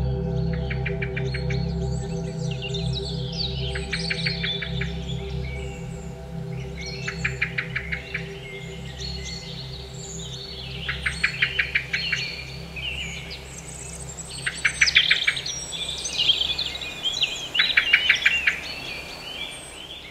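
Ambient synth drone fading out beneath birdsong. Short trilled bird phrases with chirps repeat every three to four seconds as the drone drops away.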